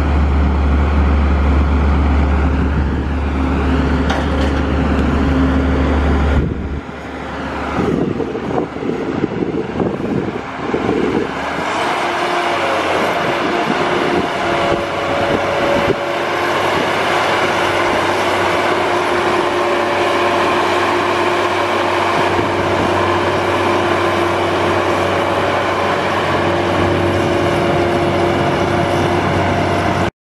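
Cummins six-cylinder turbo diesel engine of a self-propelled crop sprayer running. A deep, steady drone cuts off suddenly about six seconds in. A rougher, uneven stretch follows, then from about twelve seconds a steady higher-pitched hum.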